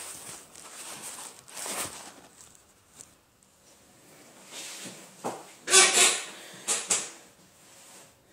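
Close, noisy handling and rustling sounds as a man shifts in his chair and adjusts the phone filming him. There are a few short bursts and a click, the loudest cluster about six seconds in.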